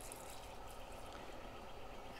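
Liquid poured from a can into the inlet of a Dresser Roots rotary gas meter, a faint steady trickle, flushing debris from the meter's stuck impellers.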